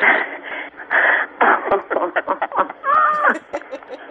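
Several people laughing and exclaiming in short repeated bursts, heard with the thin, band-limited sound of a radio broadcast and phone line.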